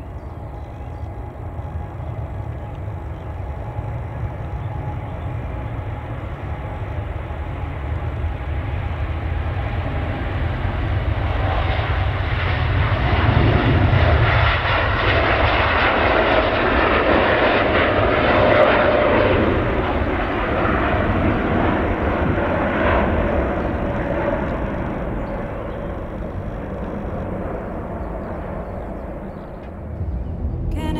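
Boeing 787-9 Dreamliner's twin turbofan engines at takeoff thrust. The jet noise grows steadily louder as the airliner rolls and lifts off, peaks in the middle, then fades as it climbs away.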